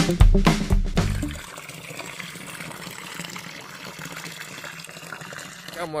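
Music ends about a second and a half in, then a steady rushing noise like running water.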